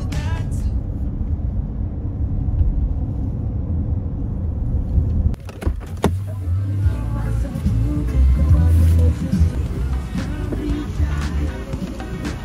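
Low, steady rumble of a car's cabin on the move, with a few sharp clicks about five and a half seconds in.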